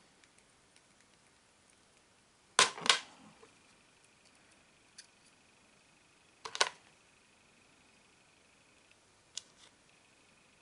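Sharp clicks and clacks of small RC car parts and hand tools being handled and set down on a plastic parts tray: a double clack about two and a half seconds in, a louder cluster about six and a half seconds in, and lighter single ticks near five and nine seconds, with quiet in between.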